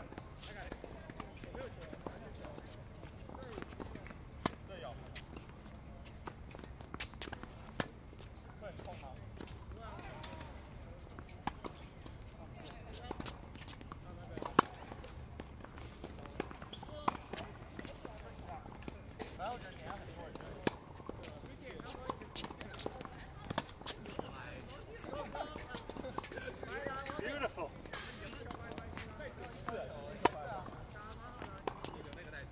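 Tennis balls struck by racquets and bouncing on a hard court during a rally: sharp pops every second or few seconds, the loudest about halfway through, over faint voices.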